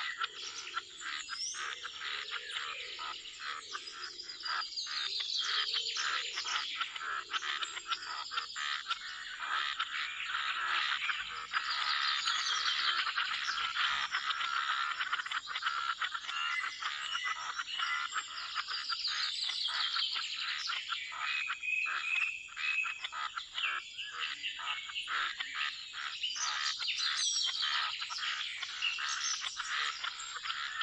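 A chorus of pond frogs calling in rapid pulsing trills, with birds chirping over it.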